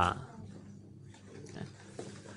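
A man's speaking voice trails off at the very start, then a pause of faint room noise with a low steady hum.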